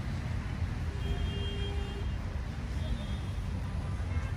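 Steady low rumble of city traffic on the surrounding roads, with faint, indistinct voices of people walking nearby.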